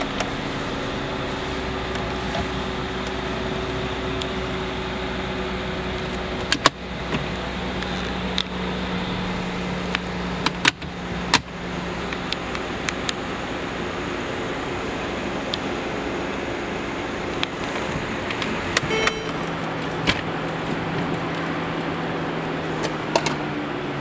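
Steady hum inside a car's cabin, with a few sharp clicks and knocks of interior trim being handled, the loudest about six and eleven seconds in.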